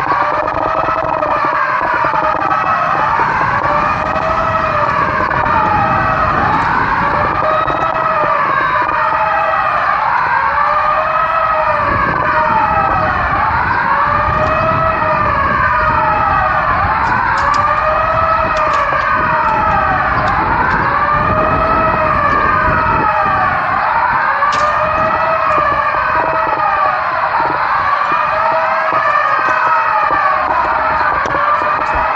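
Several emergency-vehicle sirens wailing at once, their rising and falling tones overlapping out of step, over a low rumble of vehicle noise.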